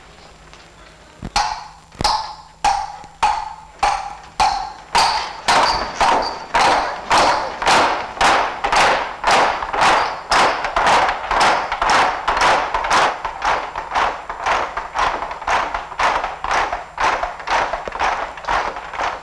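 Rhythmic banging of cups on a wooden table, many strikes landing together with a short ringing clack. It starts about a second in, slow at first, then quickens to a steady beat of about two knocks a second.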